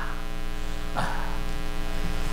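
Steady electrical mains hum in the microphone and sound system, a low buzz with a long row of overtones, with a brief soft noise about a second in.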